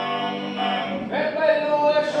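Sardinian canto a tenore: four male voices holding a close chord over the deep throat-sung bass, which thins out about half a second in. About a second in a single voice slides up into a new held note as the solo line comes back in.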